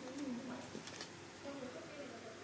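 Faint cooing of a pigeon in the background, a few low rolling calls, with a few light clicks.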